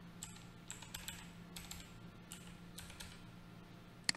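Faint computer keyboard typing: about ten light, irregularly spaced keystrokes as a password is typed in.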